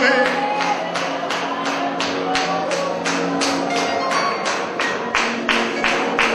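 Worship music between sung or spoken prayer lines: a steady beat of sharp strikes, about three a second, over sustained held chords.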